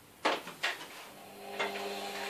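Plastic clicks from an Asus Eee PC netbook's battery latch and battery being slid out of its bay: two sharp clicks about half a second apart, then a faint steady hum.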